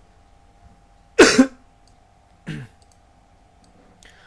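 A man coughs sharply once about a second in, then gives a second, shorter and quieter cough about a second later.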